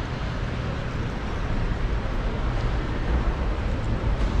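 Steady low rumble and hiss of background noise, with no distinct events.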